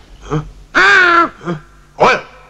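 A man's voice giving three vocal cries: a short one, then a longer high, wavering cry of about half a second, then another short one.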